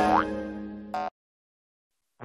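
Cartoon 'boing' sound effect with a short rising pitch, over children's background music that fades away. A brief blip comes just before the sound cuts off suddenly about a second in, leaving dead silence.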